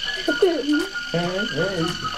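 Battery-powered light-up musical toy ball playing its electronic tune, with warbling, wavering tones over a steady high whine.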